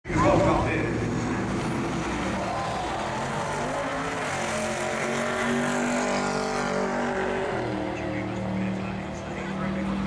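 Engine of a drag-racing VW split-screen panel van running at low speed as it rolls along the strip, its pitch shifting in the middle and settling to a steady low hum near the end. Spectator voices sound over it in the first couple of seconds.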